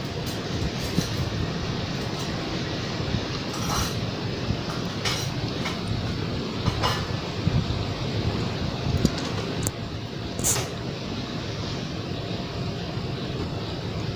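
Ceramic dishes and bowls clinking now and then as they are lifted out of a dish-drying cabinet and stacked, a handful of sharp clinks over a steady rushing background noise.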